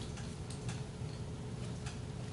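Pen stylus tapping and scratching on a pen display while handwriting, a few light irregular clicks over a low steady room hum.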